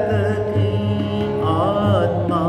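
Indian devotional song (bhajan): a voice carrying a long, bending melodic line over a steady low sustained accompaniment with low rhythmic pulses.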